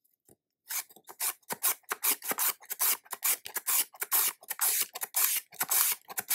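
A carrot being rubbed back and forth over a handheld julienne slicer, each stroke a quick rasping cut as thin strips shear off. The strokes start about a second in and repeat steadily, two or three a second.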